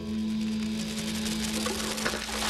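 Sound design of a Discovery Channel TV ident: a steady held musical tone with a busy crackling, clicking texture over it, growing busier near the end.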